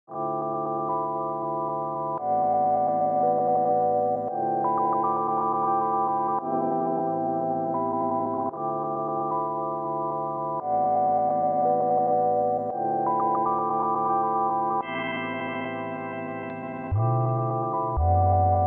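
Intro of a song: sustained keyboard chords, each held about two seconds before the next. A deep bass comes in about a second before the end.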